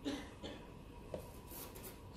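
Wooden chess pieces being handled during a move: a few short knocks and scrapes, with a piece set down on the board in a sharp tap about a second in, then a few light high clicks near the end.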